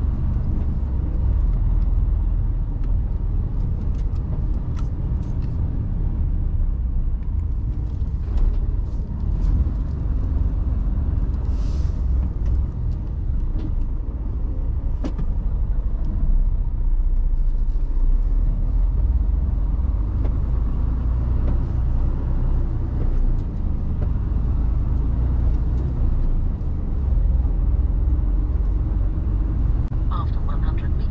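Inside the cab of a moving Mercedes Actros lorry: a steady low rumble of the diesel engine and tyres on brick-paved road, with a few light clicks and a brief hiss about twelve seconds in.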